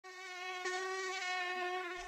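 Mosquito buzzing: one steady high-pitched whine with a slight waver, fading in over the first half second.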